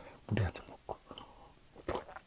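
A person's quiet murmur and mouth sounds, with a short low vocal sound near the start and a few faint clicks.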